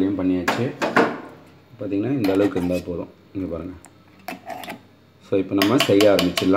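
A metal spoon clinking a few times against a stainless steel mixer-grinder jar, between stretches of speech.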